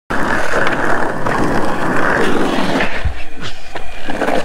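Skateboard wheels rolling over rough asphalt close by, a dense steady grinding rumble that stops about three seconds in with a low knock, followed by a few light clicks.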